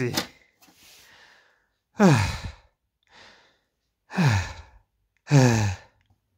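A man sighing three times, each a short, breathy exhalation that falls in pitch, with faint breathing between the sighs.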